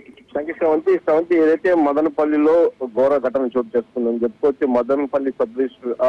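Speech only: a news reader narrating the bulletin in Telugu, speaking without a break.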